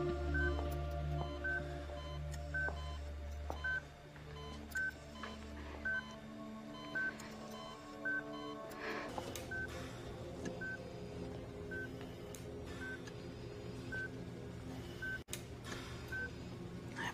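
A bedside hospital monitor beeping steadily, one short high beep about every second, over a low, sustained music score.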